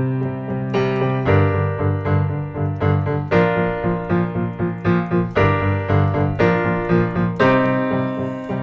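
Digital piano playing power chords (root and fifth) struck again and again in a steady pumping rhythm, about two chords a second, moving between a few chords.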